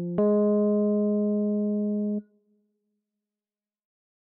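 Two keyboard notes played one after the other as a rising minor third, the test interval of an ear-training question. The lower note gives way about a fifth of a second in to the upper one, which holds and fades slightly for about two seconds, then cuts off sharply.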